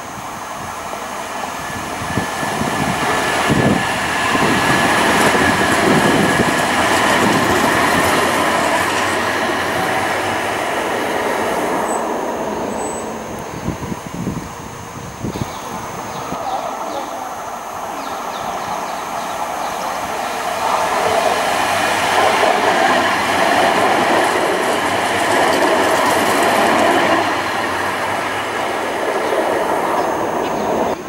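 Alstom Citadis Dualis tram-trains going by on the electric line, with a steady motor whine and the clack of wheels over rail joints. The first passes loudly from about three seconds in, and a second runs by loudly for several seconds near the end.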